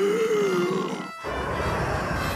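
A cartoon character's drawn-out vocal note, wavering in pitch, for about a second, then after a brief break a steady, loud rush of cartoon wind as the cloud character blows.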